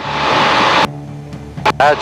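Cockpit noise of a Foxbat light aircraft in cruise with its Rotax 912 flat-four running, heard through voice-activated intercom mics: a loud rush of engine and airflow that cuts off suddenly just under a second in as the mic gates shut, leaving a quieter steady engine drone.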